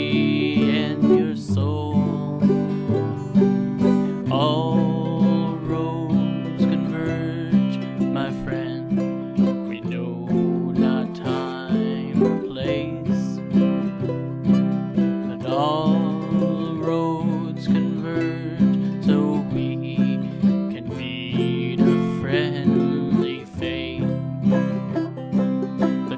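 Instrumental break of an acoustic cover played on plucked strings (banjo, ukulele and guitar), with a steady repeating picked pattern in the low notes and melody lines over it.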